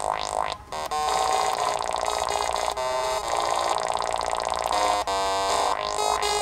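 littleBits Synth Kit modular synthesizer playing a series of held electronic notes from its keyboard module, changing pitch every second or two. There is a rising sweep at the start and a brief drop-out about half a second in.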